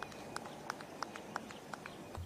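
Faint, evenly spaced short chirps, about three a second, from a creature calling on the course, over quiet outdoor ambience.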